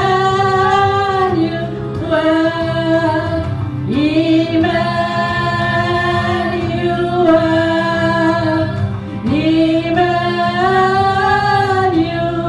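Women singing a slow worship song in long held phrases, each phrase sliding up into its first note, over steady keyboard accompaniment.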